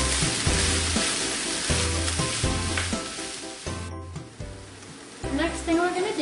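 Ground meat, onions, carrots and shredded summer squash sizzling in a skillet on medium-high heat while a wooden spoon stirs them. The sizzle drops off suddenly about four seconds in and stays quieter until it picks up again near the end.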